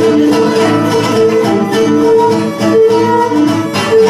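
Cretan folk music: a Cretan lyra plays a melody in held notes over plucked laouto accompaniment.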